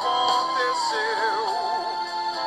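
A pop ballad playing: a singer holds long notes over instrumental accompaniment, with a wavering vibrato note about a second in.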